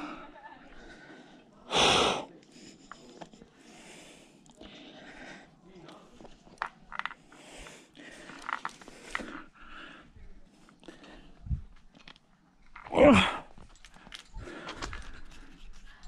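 A rock climber's hard breathing while climbing, with short forced exhales and a loud one about two seconds in, and a few light clicks and scuffs against the rock. Near the end comes a strained cry of "oh, ay, ay, ay" as the climber struggles on a hard move.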